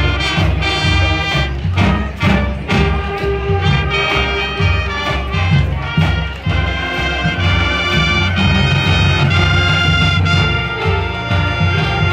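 School band playing a loud, up-tempo tune on brass with a sousaphone bass line and a steady drum beat.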